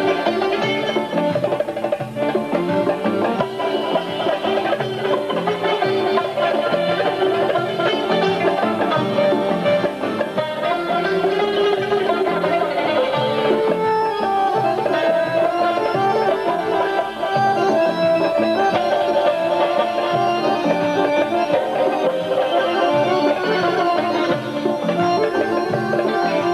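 Instrumental folk music: a bowl-bodied lute plucked quickly with an accordion holding chords underneath, steady and loud.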